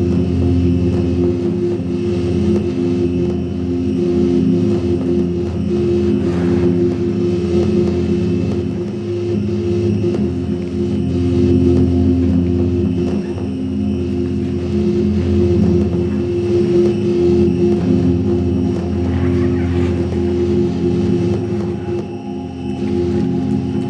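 A steady low drone with several held tones, part of the dance's recorded soundtrack, running on with little change.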